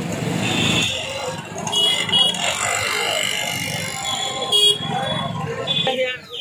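Busy street noise: road traffic with several short vehicle horn honks over the chatter of a crowd.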